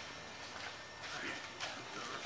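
Quiet background with faint voices and two soft knocks in the second half.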